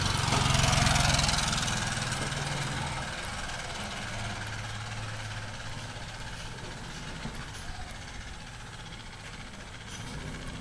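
A steady low engine hum, with a louder rush of noise that peaks about a second in and fades over the next two seconds.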